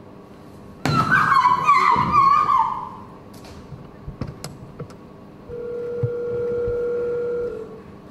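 A high, wavering scream about a second in, lasting about two seconds. Near the end comes a steady electronic telephone tone of about two seconds, the line ringing as an emergency number is called.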